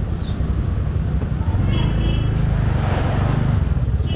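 Steady low rumble of a motorcycle riding slowly through town traffic, with a short high beep about two seconds in.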